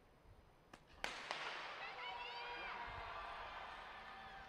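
Starting gun fired once about a second in, a sharp echoing crack that signals the start of the 800 m race, followed by spectators shouting and cheering.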